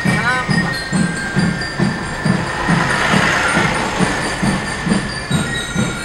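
Large marching bass drum beaten in a steady rhythm, about two beats a second, over the low rumble of vehicles on the road.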